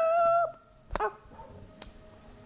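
A child's high-pitched, held squeal in a put-on voice, slightly wavering and stopping about half a second in. A short sharp click follows about a second in.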